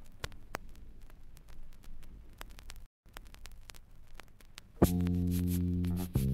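Vinyl LP surface noise in the gap between two tracks: faint crackle with scattered clicks, dropping out completely for an instant about halfway. About five seconds in, the next track begins with a loud sustained chord.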